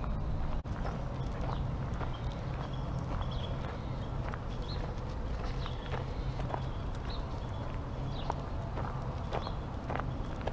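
Footsteps crunching on a gravel road in an uneven run of sharp clicks, over a steady low rumble, with small birds chirping now and then.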